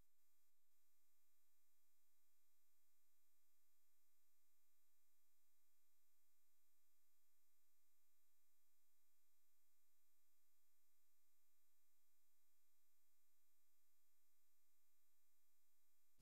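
Near silence: a gap in the screen-recording audio with no audible sound.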